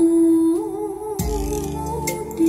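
Bolero-style song playing from CD through a JBL SAS101 mini hi-fi system's speakers: a long held melody note with vibrato, with bass notes coming in just over a second in.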